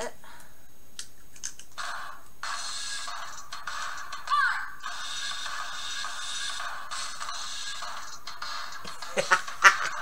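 Small battery-powered toy drum kit from the LOL OMG Remix set playing a short electronic music clip through its tiny built-in speaker. The sound is thin, with no bass, and stops about eight and a half seconds in. A few sharp plastic clicks follow near the end.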